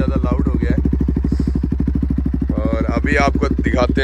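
Bajaj Pulsar 200NS single-cylinder engine idling steadily through an aftermarket Akrapovic full-system exhaust, an even rapid train of exhaust pulses with no revving.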